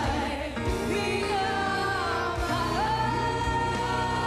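Female singers performing an OPM jukebox song over instrumental backing, holding long notes with vibrato; the music dips briefly about half a second in, then carries on with voices gliding between sustained notes.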